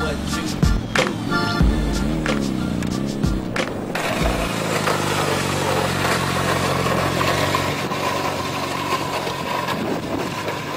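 Music with a sharp, regular beat that cuts off about four seconds in. It gives way to a sport motorcycle's engine running steadily amid a rushing noise.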